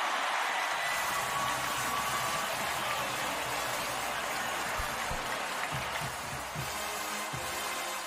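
Large stadium crowd cheering and applauding a home-team touchdown, a steady roar that eases slightly, with music faintly underneath.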